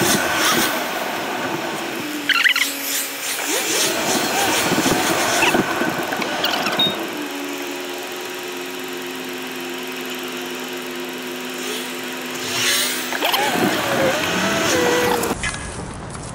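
Car interior noise while driving slowly in traffic: engine and road noise, settling into a steady hum for several seconds in the middle.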